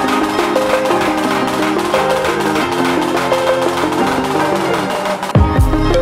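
Snare drum roll of fast, even stick strokes under background music of plucked, guitar-like notes; a deep bass beat comes into the music about five seconds in.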